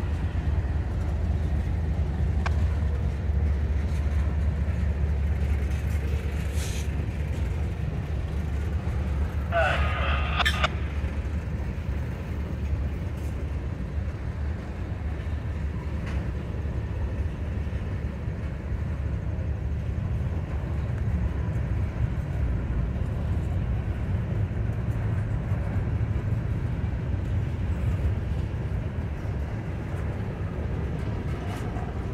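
Freight cars rolling past at close range with a steady low rumble of wheels on rail. A brief higher-pitched sound comes about ten seconds in.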